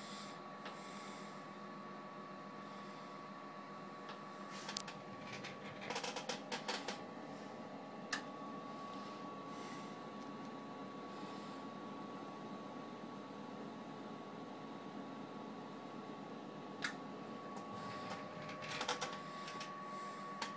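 The Ameritron AL-82 linear amplifier's cooling fan running steadily and quietly, with a faint steady whine over the hum. A few light clicks and taps come here and there.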